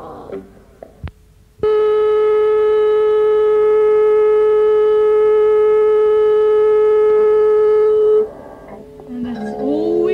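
A click, then a loud, steady telephone dial tone that holds for about six and a half seconds and cuts off suddenly; near the end, voices start talking over a steady tone.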